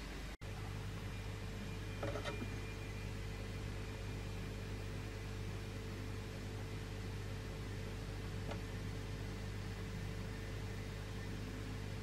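Steady low electrical hum with faint hiss, with a soft knock about two seconds in.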